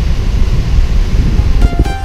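Loud, uneven low rumble of wind buffeting the camera microphone. About one and a half seconds in, music with plucked notes comes in over it.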